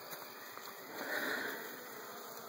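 Faint hum of honeybees crawling over an open hive box, with a short sniff about a second in.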